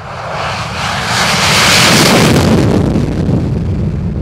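F/A-18 Hornet's twin jet engines running at full takeoff power as the fighter rolls past and lifts off. The roar swells to its loudest about two seconds in, then begins to fade as the jet moves away.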